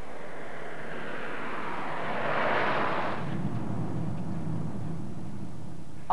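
Small van driving past on a wet road. Tyre hiss swells to a peak about two and a half seconds in, then gives way to a steady engine hum.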